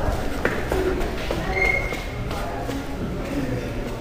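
Footsteps and shuffling on a hard hallway floor, with scattered knocks, in a large echoing room. A short high squeak comes about one and a half seconds in.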